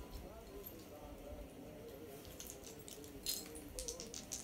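Light clicks and clinks of small hard objects being handled in the second half, as dice are searched for among the items on the table, over faint background music.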